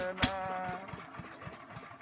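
A small engine idling with a steady, rapid low beat. A wavering pitched tone fades out in the first second.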